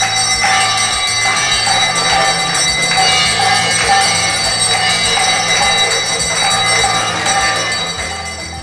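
A group of people clapping together in a steady rhythm, roughly once a second, over continuous ringing and jingling of bells and a steady low drone.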